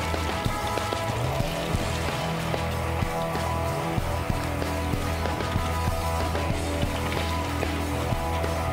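Background music with sustained notes and a steady low bass line.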